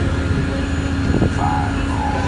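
Engine of an amphibious tour boat/bus running steadily under way on the water: a constant low drone, mixed with the rush of wind and churning water.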